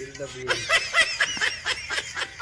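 Canned laugh-track laughter: a burst of high-pitched snickering in quick pulses, starting about half a second in.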